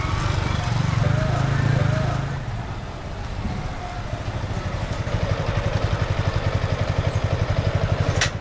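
Motorcycle engine running close by, with a low, even putter that becomes a rapid, regular pulsing in the second half.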